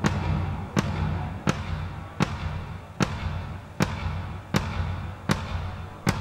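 A single drum struck at an even, slow pace, about eight sharp hits, one every three-quarters of a second, as a drum is checked at a soundcheck. A steady low hum sits underneath.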